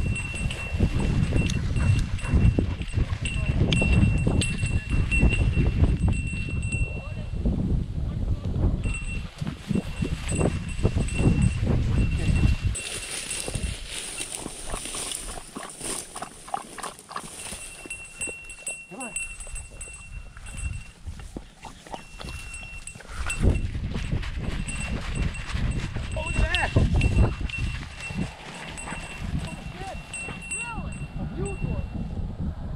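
A bell on a French Brittany's collar rings steadily as the dog works through dry grass and cattails. Heavy rumbling movement noise from the dog pushing through the cover comes in the first half and again a few seconds from the end.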